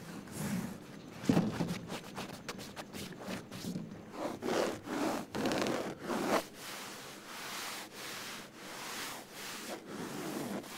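Fingernails and fingertips scratching and rubbing coarse woven sofa upholstery fabric: a run of short scratching strokes, strongest in the middle, giving way to softer, longer rubbing swishes near the end.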